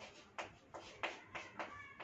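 Chalk writing on a chalkboard: a quick series of short strokes and taps, some of them with a brief high squeak of the chalk.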